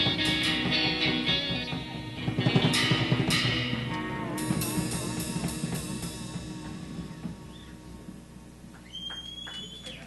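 Live rock band of electric guitar, bass guitar and drum kit bringing a song to its end: the full band plays, with loud cymbal crashes about three seconds in, then the last chords ring on and fade away over the following seconds.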